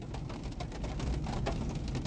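Low, steady rumble inside a car cabin, with faint scattered ticks and rustles.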